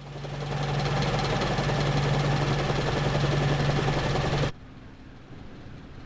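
A loud, steady mechanical din with a deep hum under it fades in over the first second. It cuts off abruptly about four and a half seconds in, leaving quieter room tone.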